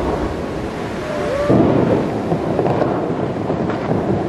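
Tall water jets of a large outdoor fountain spraying up and falling back onto the lake: a steady rushing, rain-like hiss of water.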